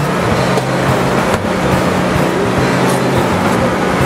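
A steady low motor hum under a constant wash of outdoor noise.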